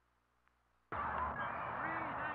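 Near silence, then about a second in the sound cuts in suddenly: several men shouting and calling over one another across a football practice field, on thin, old film-recorded sound.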